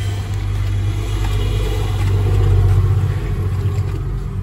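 Steady low rumble of a motor vehicle's engine running, even in level throughout.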